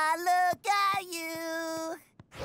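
A cartoon boy's voice singing unaccompanied: two short notes, then a longer held note that stops just before the end.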